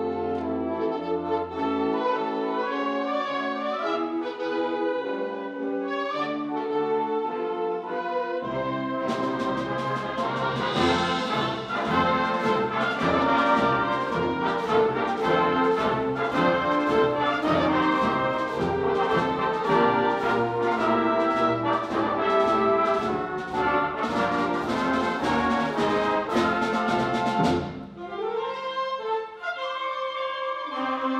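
Concert band of woodwinds, brass and percussion playing a march. The opening is softer, with held brass and low notes; about nine seconds in the full band enters with drums and cymbals and plays louder, then near the end drops back to a quieter, lighter passage.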